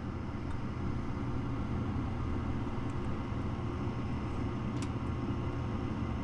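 Gas furnace's draft inducer fan motor running with a steady hum before the gas valve opens, at the pre-purge stage of the start-up sequence.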